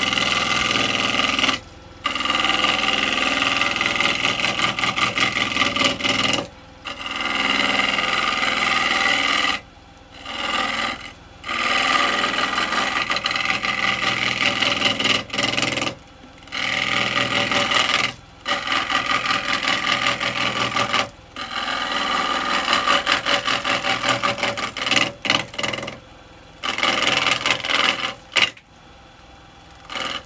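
Carbide woodturning tool cutting the outside of a spinning, out-of-round wood blank on a lathe, rough turning it to round. The cut runs in long scraping passes broken by short pauses every few seconds as the tool comes off the wood.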